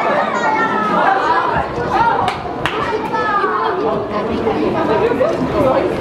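Several people chattering at once, voices overlapping with no single speaker standing out. Two sharp clicks come about two and a half seconds in.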